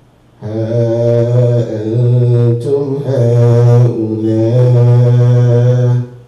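A man's voice chanting in long held notes on a low, steady pitch, starting about half a second in, with a few short breaks between phrases.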